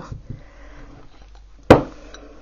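Quiet handling during hot-glue crafting, then a single sharp knock near the end, the loudest sound.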